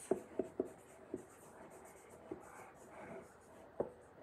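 Marker writing on a whiteboard: a quick run of short taps and strokes of the tip, fainter scratching in the middle, and one sharper tap near the end.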